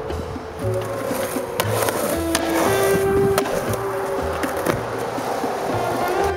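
Music with a steady bass beat and a sustained melody, with a few sharp clacks of a skateboard hitting concrete.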